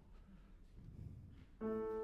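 Quiet room tone, then about a second and a half in a grand piano note is struck and held as playing resumes.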